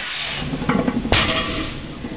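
A 455 lb barbell loaded with cast-iron plates is lowered and set down on a rubber floor mat between deadlift reps. There is a single sharp thud and clank of the plates about a second in.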